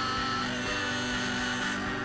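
Live church worship band music: a singer holds one long note for about a second and a half over sustained chords from the band.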